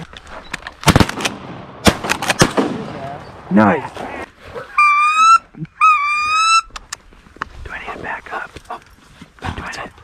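Shotgun shots: a loud sharp report about a second in and a quicker cluster of reports around two seconds. About five and six seconds in come two drawn-out, high-pitched calls, each rising slightly.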